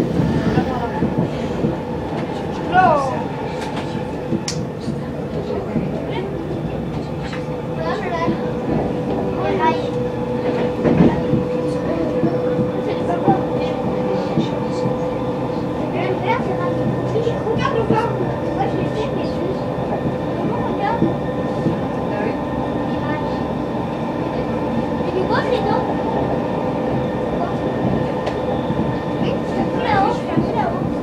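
Inside an RER A MI84 electric multiple unit running at speed: steady rolling and running noise with a steady mid-pitched whine and scattered clicks from the wheels and rails.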